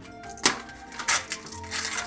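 Covering of a spot on a toy surprise box being poked through and torn open by hand, with a few short sharp rips about half a second in, at a second and near the end. Quiet background music runs underneath.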